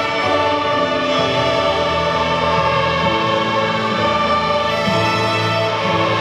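Massed student string orchestra of violins, violas, cellos and double basses playing slow, held chords. The harmony shifts about halfway through and again near the end.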